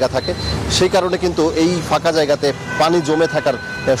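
A reporter speaking in Bengali over background road traffic noise, with a faint steady high tone briefly near the end.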